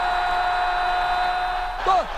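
A football commentator's long goal cry, held at one steady pitch, over the noise of a stadium crowd. Near the end it breaks off into the next excited shout.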